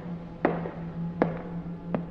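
Footstep sound effects climbing stairs: three sharp steps about three-quarters of a second apart, over a low, steady background music drone.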